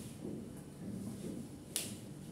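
A single sharp, short click near the end, over quiet room tone.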